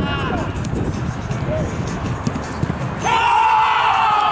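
Pitch-side noise of a small-sided football match as a shot is taken, with a brief shout at the start. About three seconds in, loud goal-celebration music starts abruptly as the goal goes in.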